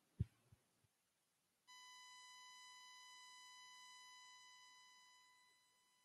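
A dull thump with two fainter knocks after it, then a faint, steady high tone with overtones that starts suddenly, holds for about three seconds and fades away.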